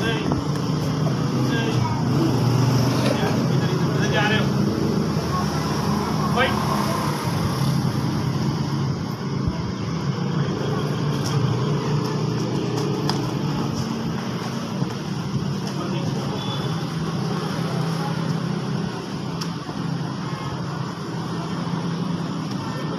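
Steady outdoor background noise with a low hum, with indistinct voices in the first several seconds.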